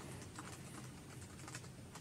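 Faint, irregular keyboard typing: quick scattered clicks with no voice over them.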